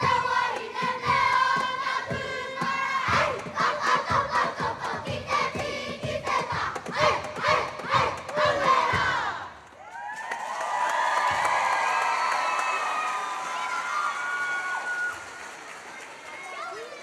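Children's kapa haka group shouting a haka chant in unison, punctuated by regular sharp beats, ending abruptly about nine and a half seconds in. The audience then cheers and whoops, fading toward the end.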